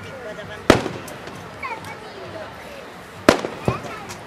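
Aerial firework shells bursting, three sharp bangs: one about a second in, then two close together near the end. Voices chatter underneath.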